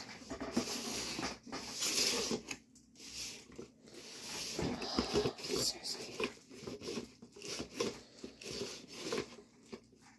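Someone rummaging through craft supplies: irregular rustling and crinkling of plastic packets, with a few light knocks.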